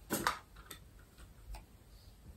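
A light being struck to light a candle: one short burst of noise just after the start, followed by a few faint, irregular clicks.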